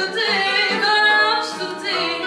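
A woman singing fado in Portuguese, her voice bending and holding long notes, accompanied by a Portuguese guitar and a classical guitar.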